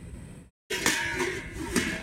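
Sound of a video being played back on a computer, with a voice and a couple of sharp knocks. It cuts out completely for a moment about half a second in.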